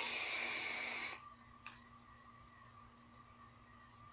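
A vape tank on a GX350 mod being drawn on: a hiss of air pulled through the tank's airflow and coil for about a second, then near quiet.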